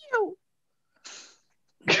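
A short squeal that slides steeply down in pitch, then a faint breathy puff about a second later.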